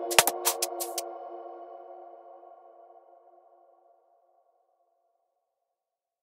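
The ending of a drum and bass track: the drums stop about a second in, leaving a held synth chord that fades out over the next few seconds.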